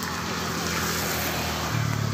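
A motor vehicle running close by, a steady engine noise whose low drone grows stronger near the end.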